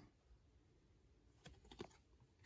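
Near silence, with a few faint light clicks in the second half as trading cards are handled and set down on a tabletop.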